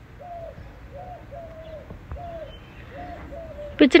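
A dove cooing in the background: a steady run of short, soft coos, about two a second, each note rising and falling slightly. A woman's voice starts just before the end.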